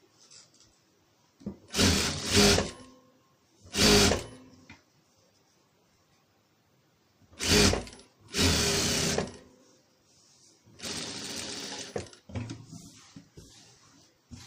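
Electric domestic sewing machine stitching in several short bursts with pauses between, the last run quieter, as it tacks sheer organza sari fabric down onto a cushion cover.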